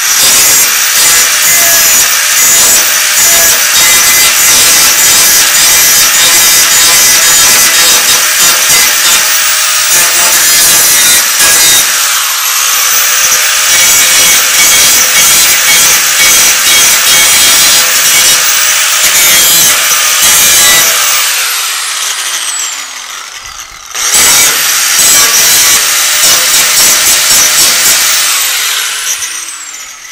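Handheld angle grinder grinding weld burrs off a welded steel hinge bracket: a loud, steady grinding that dips briefly under load. About two-thirds of the way through it is switched off and spins down with a falling whine, starts again about three seconds later, and spins down once more near the end.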